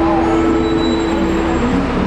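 Electronic keyboard sustaining held chord notes, one note ringing steadily and released about a second and a half in, over a steady low rumble.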